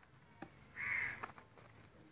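A crow cawing once, a single call of about half a second about a second in, with a few light ticks before and after it.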